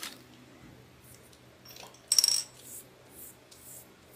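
A hard object set down with a short, bright clink that rings briefly, about two seconds in, amid faint rustling as the green modeling chocolate is put away.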